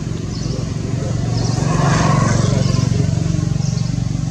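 A motor vehicle engine passing nearby: a low hum that swells to its loudest about two seconds in, then eases off. Short high chirps repeat about once a second behind it.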